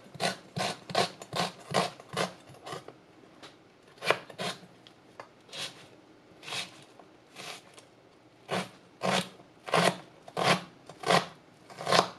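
Chef's knife slicing through a red shallot onto a plastic cutting board, each cut a short crisp stroke ending in a tap on the board. About three cuts a second at first, then slower, irregular cuts as the shallot is turned and diced fine.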